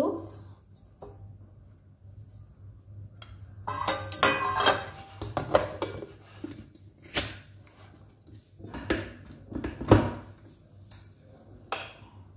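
Stainless steel pots, bowls and lids being handled and set down on a kitchen counter: a run of metal clatters and clinks, then single knocks, the loudest about ten seconds in.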